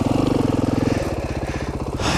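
KTM 530 EXC-R single-cylinder four-stroke dirt bike engine running at low speed under way, its note easing off about a second in.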